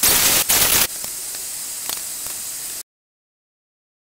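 Pneumatic hand tool on a compressed-air hose, run on the injection pump's tamper-proof screw: a loud rush of air hiss for about the first second with a brief dip, then a quieter steady hiss. The sound cuts off suddenly about three-quarters of the way through.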